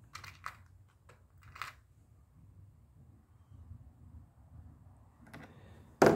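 Faint light clicks and rattles of small metal crimp terminals being handled in a plastic parts organizer. There are four or five in the first couple of seconds and another pair near the end.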